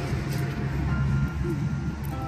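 Background music with held notes, over a steady low rumble.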